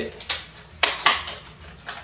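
Small package of crossbow bolts being handled: a few short, sharp crinkling and scraping noises as the packaging is worked open.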